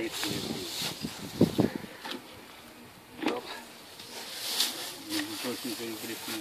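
Dry straw rustling and swishing as a pitchfork spreads it, in a few separate strokes.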